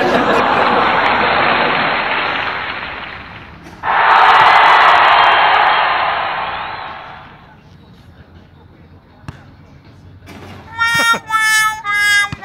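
Edited-in meme sound effects: two loud noisy swells, each starting suddenly and fading away over a few seconds. Near the end, a run of held musical notes follows.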